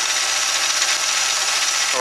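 Mini lathe running steadily with its chuck spinning: a constant motor and spindle whir with a steady high whine.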